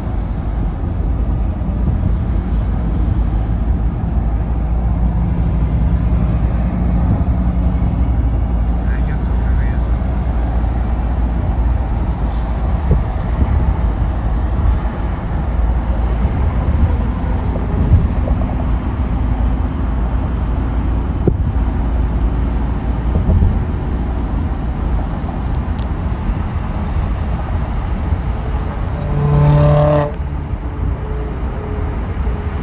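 Steady low rumble of road and engine noise inside a car's cabin at freeway speed. Near the end a brief pitched sound rises above it.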